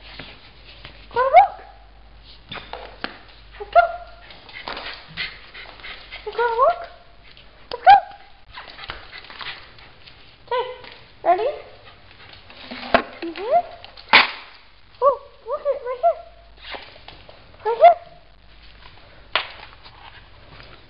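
A small dog whining and yipping in short, rising, high-pitched calls, one every second or two, worked up in excitement at going for a walk. Sharp clicks and taps come between the calls.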